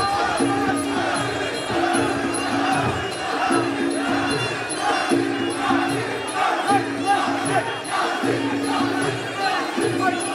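Fight crowd cheering and shouting throughout, over background music with a short repeating figure.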